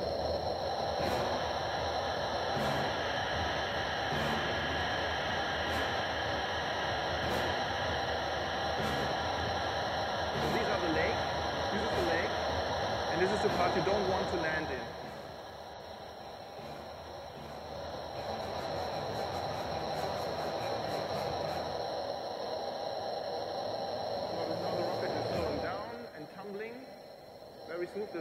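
Rushing airflow picked up by the Arguna-2 amateur rocket's onboard camera during its climb after liftoff: a steady, noisy hiss that drops in level about fifteen seconds in and builds up again toward the end.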